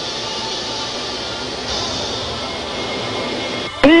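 Steady cockpit noise of an Embraer AMX jet in flight: engine and rushing airflow heard from inside the cockpit. A voice cuts in right at the end.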